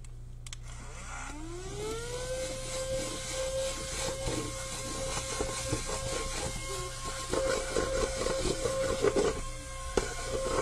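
Small handheld vacuum switching on, its motor whine rising in pitch over a second or two and then running steadily. A crackling rattle joins it as it sucks up loose excess glitter, heaviest near the end.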